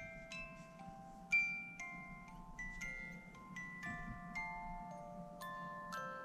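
Wind-up music box in a snow globe's base playing a tune: quiet single plucked metal notes, about two a second, each ringing on as the next begins.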